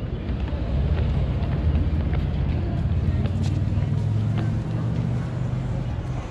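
Steady low rumble of vehicle engines running, with a held low drone that swells in the first second and stays level.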